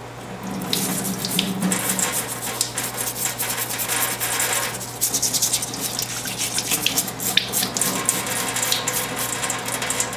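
Tap water running into a stainless steel sink, coming on about half a second in, as a small rusty steel gun part is rinsed and worked under the stream, with scattered small clicks over the steady splash.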